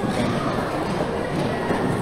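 Steady, dense clatter of many hand-rolling tools working at once on a hand-rolled kretek cigarette factory floor, with a hubbub of voices mixed in.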